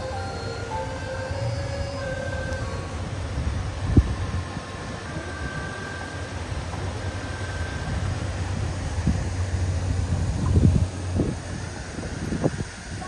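Boat motor humming steadily under a low rushing noise, with wind gusting on the microphone in low thumps about four seconds in and again near the end. A few held music notes fade out in the first seconds.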